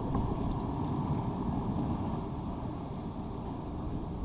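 Steady low rumble of background noise, with no distinct events standing out.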